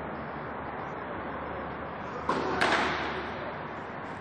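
A tennis ball struck by a racket on a first serve that turns out to be a fault: one sudden hit a little over two seconds in, trailing off briefly over steady background noise.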